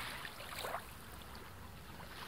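Sea waves washing gently, a soft surge of rushing wash in the first second that settles into a quieter hiss.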